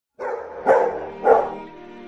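Intro music: two short dog barks about half a second apart, then a held musical chord that fades down.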